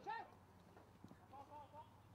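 Faint, distant shouts from players on a football pitch: a short call at the start and further faint calls later, with one light knock about a second in.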